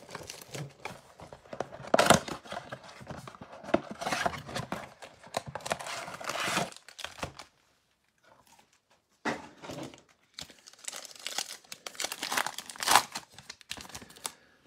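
Cardboard blaster box of trading cards torn open and its foil-wrapped card packs crinkling in the hands, dense scratchy crackling for about the first seven seconds. After a short pause, more crinkling and clicks as the stack of foil packs is handled.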